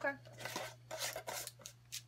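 Screw-on lid of a jar of coconut manna being twisted off by hand: a few short scraping, rubbing strokes.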